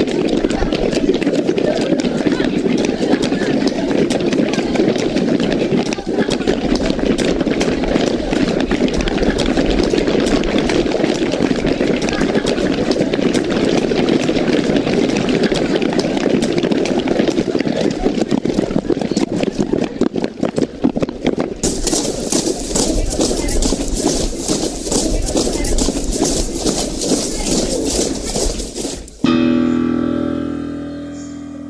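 A large group of people marching on a paved street: many footsteps scuffing and tapping over a murmur of voices. Around two-thirds of the way through, a sharper hissing layer of scuffs joins in, and the sound cuts off abruptly just before the end.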